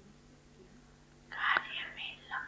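A pause in speech with a faint steady hum from the sound system. About a second and a half in comes a short breathy sound at the microphone, a breath or whispered start before the speaker goes on.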